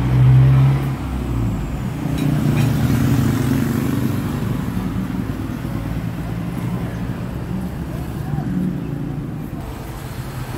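Street traffic going by: motor scooters and cars passing with a steady engine hum, loudest in the first second.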